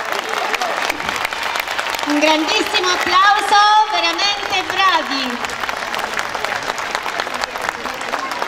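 Audience applause, many hands clapping steadily, with a voice speaking over it for a few seconds in the middle.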